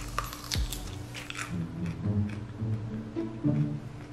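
Background music playing as someone bites into a raw white radish, with a few short crunches in the first second and a half.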